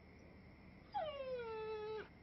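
A dog giving one whine that starts about halfway through, drops in pitch and then holds for about a second.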